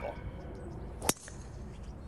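A driver striking a golf ball off the tee: one sharp crack about a second in, over a faint steady background.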